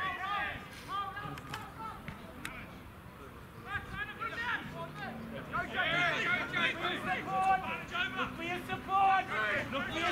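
Rugby players shouting and calling to each other across the field during open play. The calls get louder and more frequent about halfway through, as the ball is moved wide and a player breaks upfield.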